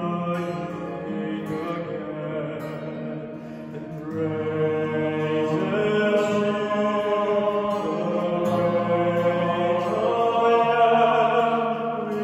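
Male vocal ensemble singing a hymn in several-part harmony, with acoustic guitar accompaniment. The voices hold long notes and swell louder about four seconds in.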